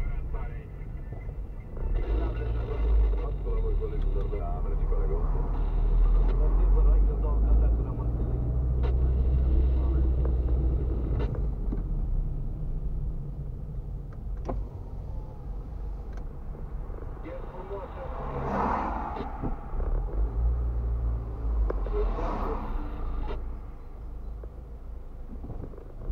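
Car driving, heard from inside the cabin: a continuous low engine and road rumble that swells and eases as the car moves along in traffic.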